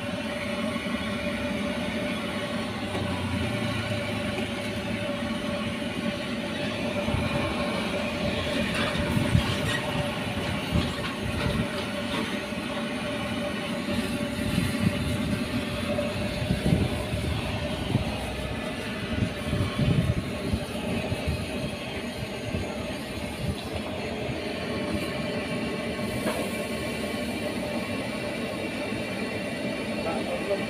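Gas stove burner running with a steady rumble under a covered wok of noodles cooking in broth. A constant hum runs through it, with uneven low bumps in the middle stretch.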